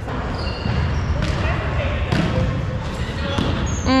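A few sharp thuds of a volleyball being bounced or hit on a hardwood gym court, over a steady murmur of voices in a large echoing hall.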